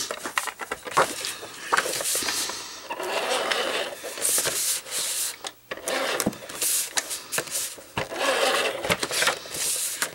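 Cardstock and paper being handled on a work surface: sliding, rustling and hands rubbing it flat, with scattered clicks and scrapes.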